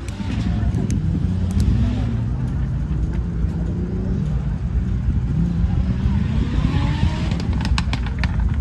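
Off-road vehicle's engine revving up and down while it labours through a mud obstacle, its pitch rising and falling. A few sharp clicks or knocks near the end.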